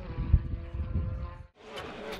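Hyundai rally car driving on a wet tarmac stage, with a held music chord fading underneath. The sound cuts out abruptly about one and a half seconds in, then faint outdoor ambience returns.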